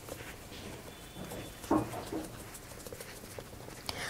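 Faint, soft, irregular taps of a makeup sponge dabbing liquid foundation onto the skin of the face, with a brief vocal sound a little before halfway.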